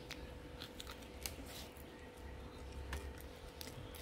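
Faint, irregular crisp crackles of a crispy fried banana fritter (bánh chuối chiên) with sesame seeds being bitten and chewed.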